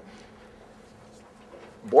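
Quiet room tone with a faint steady buzzing hum. A man's voice starts near the end.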